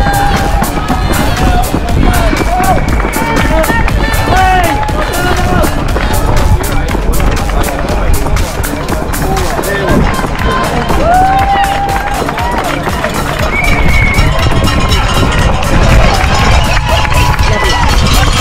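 A runner's footfalls jolting the body-worn camera in a steady rhythm of about three strides a second, heard over music and the voices of spectators along the course.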